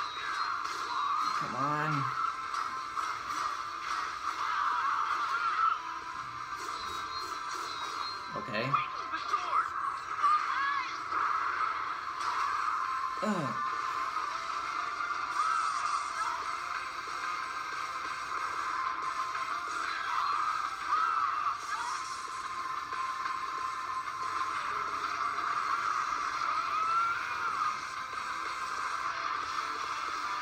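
Soundtrack of an animated robot fight playing back: continuous music mixed with fight sound effects and a few brief voice sounds, concentrated in the midrange.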